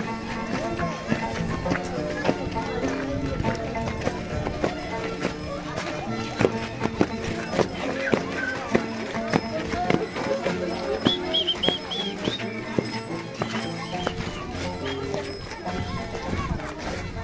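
Live chimaycha festival music: a repeating melodic tune with voices, overlaid by a dense clatter of sharp knocks from the crowd of dancers. A brief high warbling sound comes about eleven seconds in.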